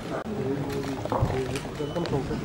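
Indistinct voices talking in a hall, with a short low thump about a second in.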